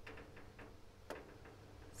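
Faint ticks of a fingertip tapping the glass touchscreen of a Victron Cerbo GX display: a few scattered clicks, the sharpest about a second in.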